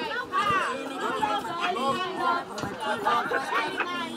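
A group of people talking at once: several voices chattering and overlapping, with no single speaker clear.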